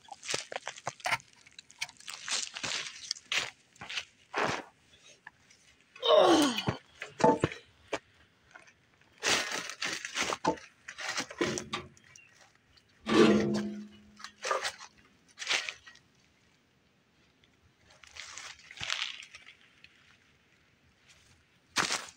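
Irregular crunching, rustling and knocking as a heavy mechanical warning siren is lifted and set back onto its mount, mixed with close handling noise from the hand holding the phone. A quieter stretch falls a little after the middle.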